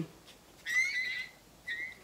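Headband-worn hearing aid whistling with acoustic feedback, a high wavering squeal lasting almost a second, then a second short squeal. The feedback comes on whenever the aid works loose and moves out of position.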